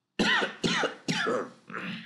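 A man coughing four times in quick succession, about half a second apart.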